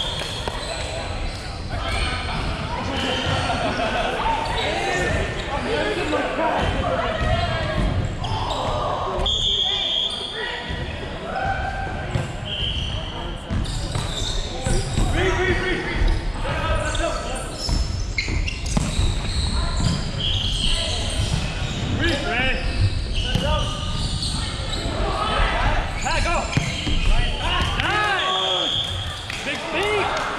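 Indoor volleyball being played in a large, echoing gym: the ball is struck and bounces on the hardwood floor, amid players' indistinct voices calling during the rallies.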